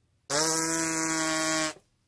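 A trumpeter buzzing his lips on their own, without mouthpiece or trumpet: one steady, held buzz of about a second and a half. This lip vibration is what sounds the trumpet once it is blown into the mouthpiece.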